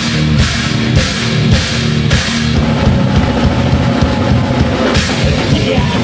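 A rock band playing a heavy, loud song live: electric guitar and bass over drums, with cymbal crashes about twice a second in the first two seconds before the playing settles into a steadier drive.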